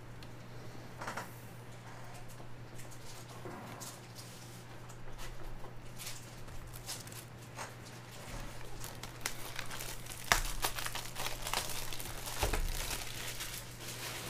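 Plastic wrapping crinkling and tearing, with cardboard rustling, as a sealed Topps Formula 1 trading-card box is opened. The handling grows busier over the last few seconds, with a sharp knock about ten seconds in and a heavier thump a couple of seconds later.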